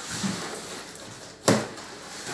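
Hands working a taped cardboard box open: cardboard flaps rustling, then one sharp knock about one and a half seconds in.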